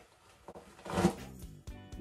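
A hairbrush stroked through long hair, one short stroke about a second in, over faint background music.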